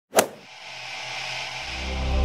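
Intro sound effect: one sharp hit right at the start, then a rising swish that builds up into music, with low bass notes coming in near the end.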